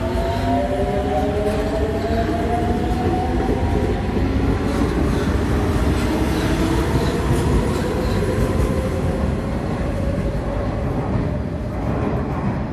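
Cairo Metro Line 2 train pulling out of an underground station: several motor whines climb together in pitch as it accelerates and then level off. Under them runs a steady rumble of wheels on rail, which eases a little near the end as the last car clears the platform.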